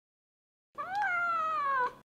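A domestic cat's single meow, about a second long, rising briefly in pitch and then slowly falling.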